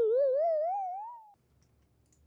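Sound effect of a single warbling tone that climbs in pitch, wobbling up and down about four times a second, fading out a little past the first second.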